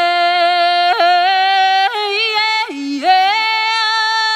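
A woman singing solo without words or accompaniment, in an open, ringing voice: long held notes joined by quick leaps up and down in pitch, about one change a second.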